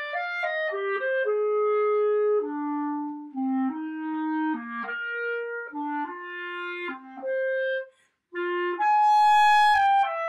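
Selmer Présence B-flat clarinet in grenadilla wood played solo. A smooth melody steps mostly downward into the instrument's low register, breaks off briefly about eight seconds in, then resumes with a loud held higher note.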